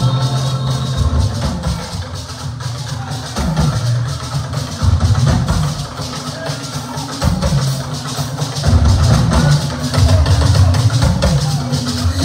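Live church band music driven by a drum kit and a deep bass line, with little singing over it.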